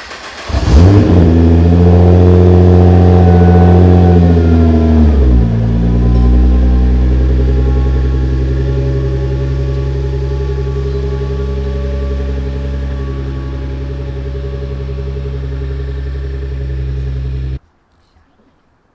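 Nissan GT-R's twin-turbo V6 being started: a brief crank, then it catches about a second in with a loud flare to a high idle. A little after five seconds it drops to a lower, steady idle that slowly settles, and the sound cuts off suddenly near the end.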